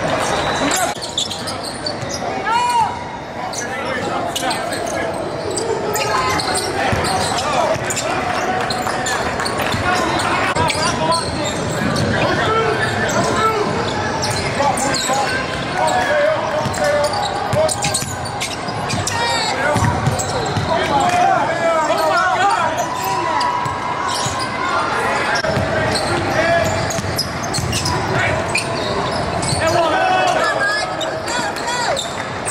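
A basketball bouncing on a hardwood gym floor during play, with voices calling out across the court, all echoing in a large hall.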